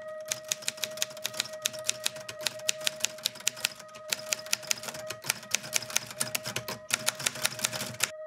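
Manual typewriter keys clacking in quick, uneven runs, with short pauses about halfway and near the end, over a steady held tone.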